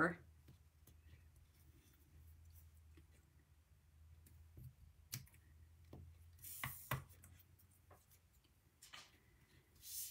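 Small craft scissors snipping through narrow die-cut pieces of cardstock: a few faint, separate snips, the clearest about five to seven seconds in.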